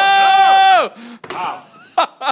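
A person's loud, high-pitched yell, held on one note for about a second, then cut off sharply. A shorter cry follows, and laughter starts at the very end.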